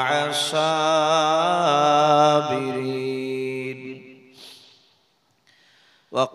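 A man chanting a Quranic verse in Arabic into a microphone, drawing out long melodic notes that waver slowly in pitch and trail off about four seconds in.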